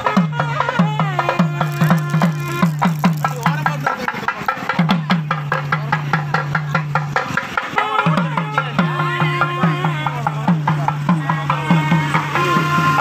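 Live temple procession music: a wavering reed or pipe melody over a low drone and regular drum strokes, with the drone dropping out briefly twice.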